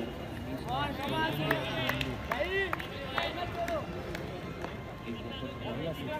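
Several voices shouting and calling out across an outdoor cricket ground, with overlapping chatter and no clear words.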